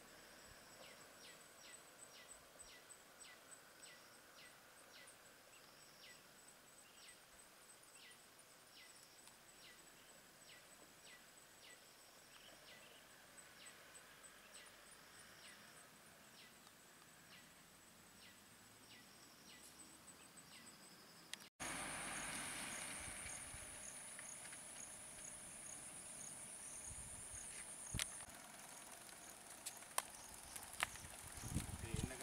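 Faint outdoor ambience: a steady high insect drone with a run of quick, repeated downward-sweeping chirps. About two-thirds of the way through it cuts abruptly to a louder, hissier high insect buzz, with one sharp click shortly before the end.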